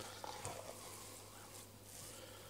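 Faint wet squishing of a hand kneading minced pig's offal and rusk in an aluminium bowl, with a low steady hum underneath.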